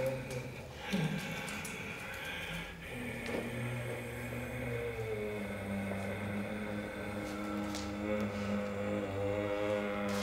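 A low sustained drone held on steady pitches, stepping down to a lower note about a second in and later rising to a higher one, with a few faint crackles of dry leaves and stalks being handled.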